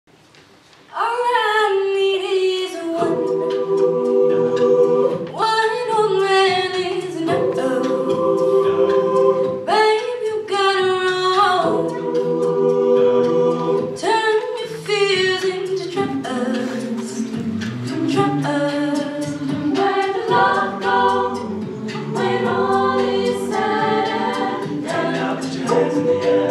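Mixed-voice a cappella group singing a pop arrangement in close harmony, a lead voice gliding over sustained backing chords with no instruments. The singing comes in about a second in and stays loud and full.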